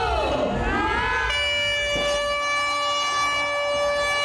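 Crowd noise with rising and falling whoops, then about a second and a half in a handheld canned air horn sounds one long, steady blast that holds to the end.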